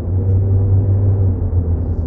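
A steady, loud low drone, with fainter higher held tones above it that do not change.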